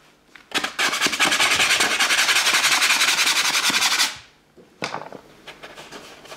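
A bristle paintbrush scrubbed rapidly back and forth: a loud, fast, even rubbing that starts about half a second in and stops after about three and a half seconds. Softer, separate brush strokes follow near the end.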